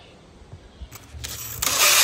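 Cordless drill turning an auger rod down in a hand-dug well hole. It starts about a second in and is running loud by halfway, with a whine that wavers as the motor works under load.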